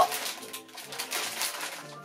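Clear cellophane bag full of foil-wrapped chocolate squares crinkling and rustling as it is lifted and handled, over steady background music.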